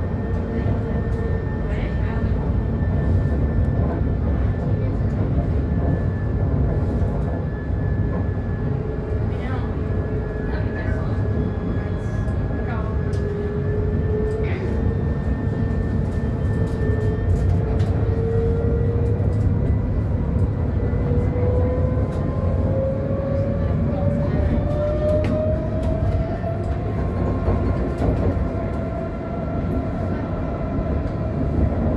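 Light rail tram heard from inside the car: a steady rumble from the running gear, with an electric motor whine that dips slightly, then rises in pitch through the second half as the tram picks up speed.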